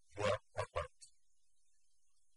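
A person's voice, a few short syllables in the first second, followed by a faint click and then quiet room tone.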